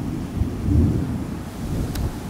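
Thunder rumbling from an approaching storm, a low roll that swells twice.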